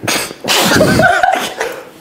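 A person bursting into breathy, explosive laughter: a short burst, a brief catch, then a longer loud stretch of over a second.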